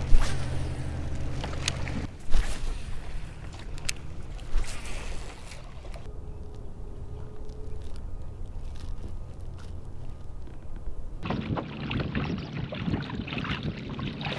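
Water lapping and rushing along a moving kayak's hull, with a few sharp knocks. The sound changes abruptly several times; it is quietest in the middle, and the rushing water is loudest near the end.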